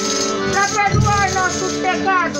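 Folia de Reis band music: steady accordion chords under a shaken rattle, with a wavering higher melody line.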